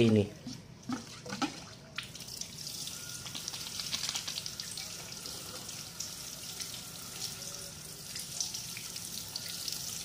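Water sprayed onto a bird's perch and feet in a wire cage: a few small knocks, then from about two seconds in a steady hiss of spray with water pattering on the cage.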